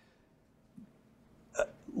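A pause in a man's talk in a small room: mostly quiet, with a faint short sound about a second in and a quick intake of breath near the end, just before he speaks again.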